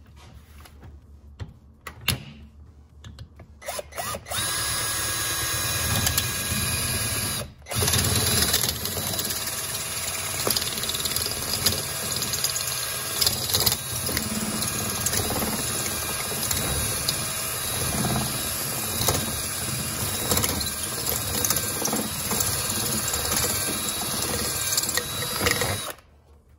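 Power drill boring a hole through a clear plastic jar lid. After a few seconds of small knocks as the jars are handled, the drill runs steadily for about twenty seconds, with one short stop a few seconds in.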